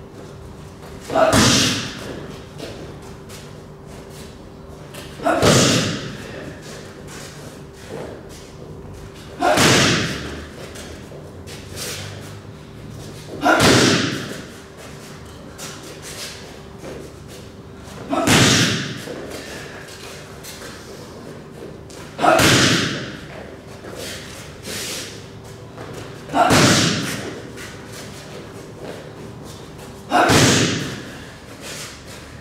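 Boxing gloves striking focus mitts in a pad drill: a loud burst of hits about every four seconds, seven times.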